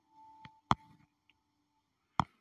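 Two short clicks a quarter second apart, the second sharp and louder, over a faint steady hum that fades out near the end.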